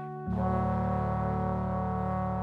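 Big band brass section holding sustained chords. The sound dips briefly, then about a quarter second in a new, louder chord enters, weighted by low brass such as trombones.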